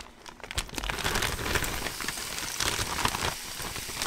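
Floured raw beef chunks tipped from a plastic zip-top bag into a Ninja Foodi's hot, oiled pot on its sear setting: the bag crinkles and the meat starts to sizzle in the oil, a steady crackle from about a second in.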